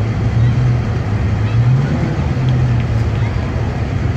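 Parade vehicles passing slowly at close range, their engines making a steady low drone.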